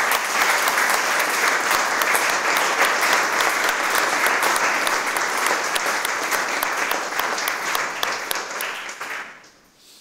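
Audience applauding: many hands clapping in a dense, steady round that fades out shortly before the end.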